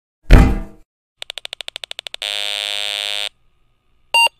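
Intro-animation sound effects: a loud thud with a short ring, then a quick run of about a dozen clicks, then a steady buzzy electronic beep about a second long.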